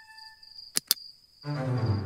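Cartoon night-time sound effects: a steady high cricket-like chirr under a musical chime that fades out. Two quick clicks come a little under a second in, then a low rumbling noise starts about halfway through.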